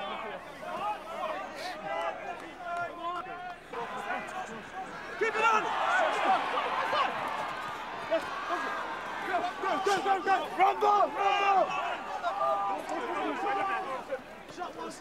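Men shouting on a rugby pitch, many overlapping voices with no clear words, over crowd noise that swells about five seconds in.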